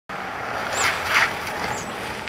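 Compact SUV driving past on a slushy winter road: steady tyre and road noise that swells twice about a second in.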